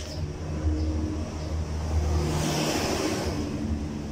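A motor vehicle engine running with a steady low drone, and a swell of louder engine and road noise that builds about halfway through and fades again a second or so later, as a vehicle passes.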